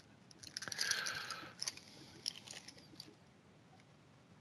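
Foil wrapper of a trading-card pack crinkling as it is peeled off the cards, followed by a few faint clicks of the cards being handled.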